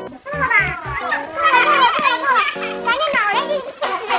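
Excited voices shouting over and over, rapid and overlapping, over background music.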